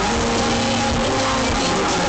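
Loud live hip-hop concert sound from the arena PA, heard through a phone's microphone from within the crowd: a dense, steady wall of music with a held low note through most of it.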